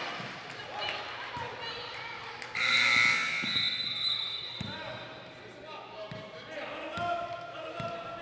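Basketball bouncing several times on a hardwood gym floor under steady crowd chatter, with a loud, shrill whistle blast about two and a half seconds in that lasts about a second.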